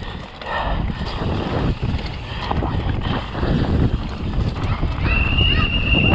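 Mountain bike tyres crunching over loose, dusty gravel and rocks, with the bike rattling, as it descends at race speed. About five seconds in, a long, steady high whistle comes from the spectators.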